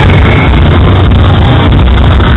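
Live heavy metalcore band with drums and distorted guitars, plus crowd noise, recorded at close range through an overloaded camera microphone, so it comes through as a dense, distorted roar heavy in the low end.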